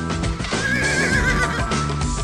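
A horse neighing once, a high wavering call about a second long, over background music.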